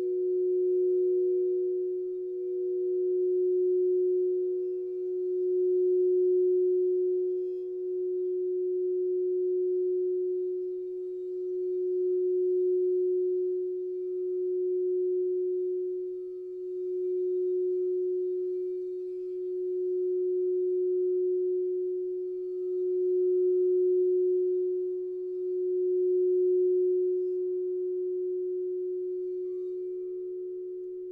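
Frosted quartz crystal singing bowls rimmed with mallets, sounding one strong sustained low tone with a fainter higher tone above it that drops away about halfway through. The sound swells and eases about every two to three seconds and fades over the last few seconds.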